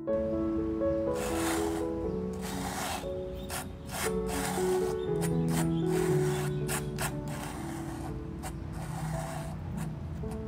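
Metal palette knife scraping and spreading thick acrylic paint across a stretched canvas: a long rasping stroke about a second in, then a run of short sharp strokes, over soft background music.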